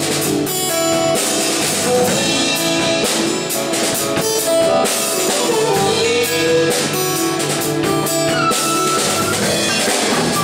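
Live band playing an instrumental passage: guitars, bass, drum kit and violin together, with some sliding melody notes.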